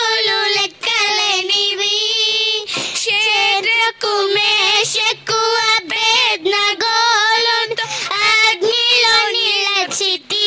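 Two girls singing a worship song together, a held, wavering melody line broken by short breaths.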